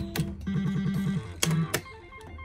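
Juggler pachislot machine: a sharp click as the last reel stops, then a quick run of about eight repeated electronic beeps as a grape win is counted into the credits, followed by two more sharp clicks.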